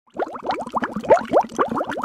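Cartoon bubble sound effects: a rapid run of short, rising bloops, several a second, starting just after the opening.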